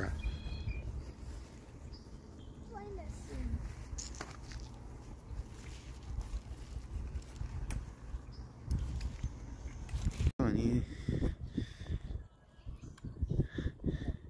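Faint, indistinct voices over a steady low rumble outdoors, broken by a sudden brief dropout about ten seconds in.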